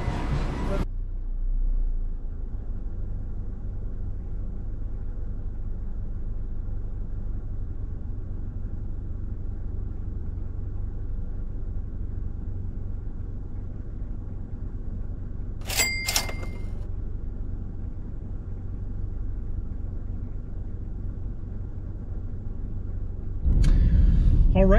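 Steady low road and engine rumble heard inside the cabin of a moving car. A little past the middle comes a brief double beep.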